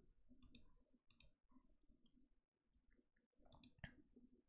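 Faint computer mouse clicks, several scattered through the seconds, the last and loudest near the end.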